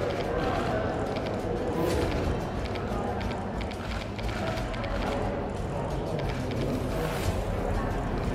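Indistinct crowd chatter mixed with music, with many short sharp clicks throughout.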